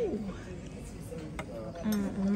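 A woman's voice: the end of an excited "woo" trailing off at the start, then low background noise with a single sharp click about one and a half seconds in, and another held voice sound beginning near the end.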